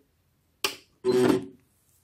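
Handling noise: a short knock about half a second in, then a brief rustle about a second in, as fabric and a satin ribbon are moved about on the sewing machine bed.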